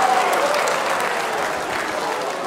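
Large studio audience applauding and laughing at a punchline, a dense, steady wash of clapping that eases slightly toward the end.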